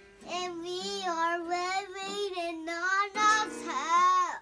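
A young boy singing in two long, wavering phrases, with a few strums of a small guitar ringing under his voice.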